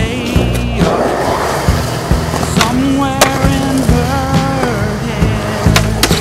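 Music with a deep, stepping bass line and a wavering melodic line, mixed with a skateboard rolling on concrete and sharp clacks of the board striking the ground and a ledge.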